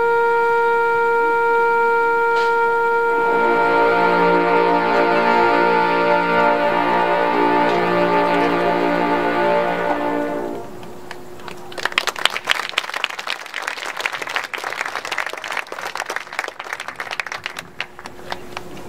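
Two trumpets hold a long note; about three seconds in the full marching band's brass joins in a loud sustained chord that cuts off at about ten seconds. After it, quieter rapid struck notes from the front ensemble's mallet percussion.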